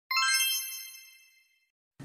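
A bright chime sound effect on a channel logo sting: struck once just after the start, with several high ringing tones that fade out over about a second and a half.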